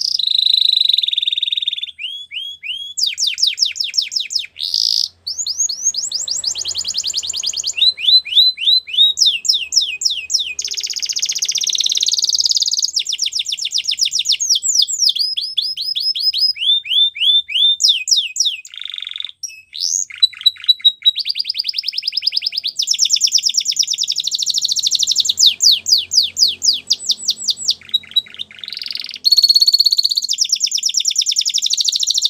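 Domestic canary singing a long, unbroken song: fast runs of one repeated note, each run lasting a second or two before it switches to another, mixing falling whistled notes with rapid buzzy trills.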